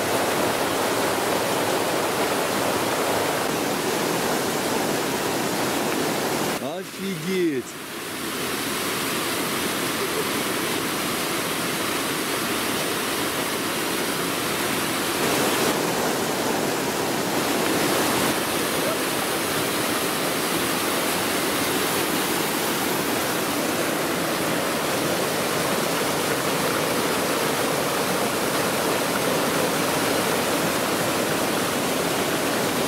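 Mountain stream rushing down a cascade of small waterfalls over rock slabs, a steady, loud rush of water. About seven seconds in, the rush briefly drops away for a second or so.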